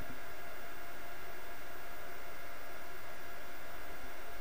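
Steady background hiss of an open microphone, with a few faint steady tones in it and nothing else happening.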